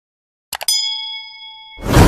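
Subscribe-button animation sound effects: a few quick mouse clicks about half a second in, then a notification-bell ding that rings for about a second, then a whoosh rising near the end.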